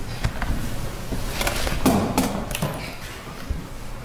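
People in a courtroom gallery settling onto wooden benches: scattered knocks, bumps and shuffling, busiest around the middle and dying down near the end.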